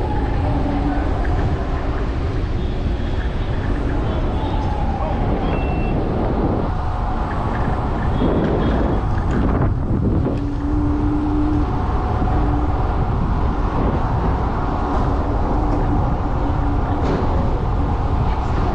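Steady wind rumble on the microphone of a camera riding an electric kick scooter through city traffic. Street traffic noise goes on throughout, with a brief louder stretch near the middle.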